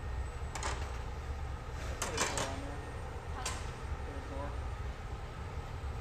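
Steady low rumble of a glassblowing hot shop's gas burners: the glory hole and the bench torch, running continuously. A few faint, distant voices come through it.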